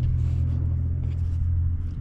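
A steady low rumble with no clear rise or fall.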